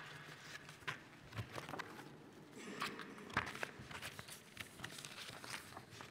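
Sheets of paper being shuffled and lifted on a lectern close to its microphone: soft rustling broken by scattered light taps, the sharpest a little past the middle.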